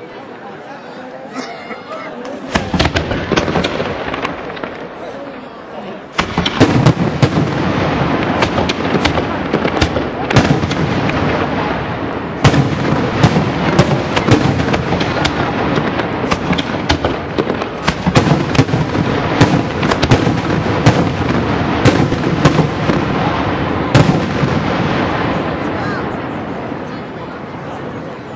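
Aerial firework shells bursting in a dense, continuous barrage of sharp bangs over a loud rumble. It starts with a single burst a couple of seconds in, breaks out in full about six seconds in, and tails off near the end.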